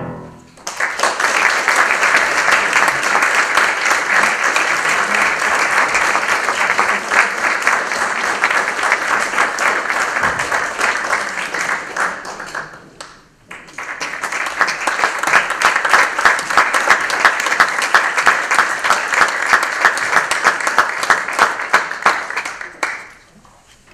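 Audience applauding in two rounds: clapping breaks out just as a singer's final note with piano ends, dies away about two-thirds of the way through, and after a short lull a second round of applause starts and runs on.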